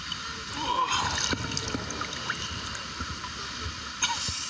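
Shallow creek water sloshing and splashing around legs as people wade through it, close to the water surface, with small irregular splashes.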